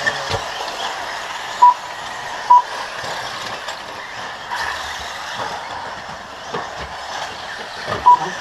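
Steady, mixed noise of several radio-controlled off-road buggies racing, with two short, loud electronic beeps about a second apart near the start, the lap-timing system's beep as cars cross the line.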